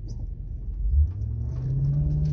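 The 2011 Ford Crown Victoria Police Interceptor's 4.6-litre V8 accelerating, heard from inside the cabin. The engine swells about a second in, then its note climbs steadily as revs rise toward 2,000 rpm.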